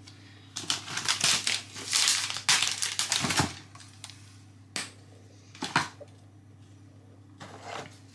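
A chocolate bar's wrapper crinkling as it is handled for about three seconds, then two sharp snaps about a second apart as squares of chocolate are broken off the bar.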